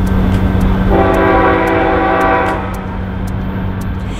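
Train horn sounding one blast of about a second and a half, a chord of several tones, over a steady low rumble.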